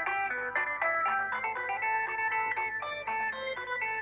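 Background music: a quick melody of short, clear notes over a light ticking beat.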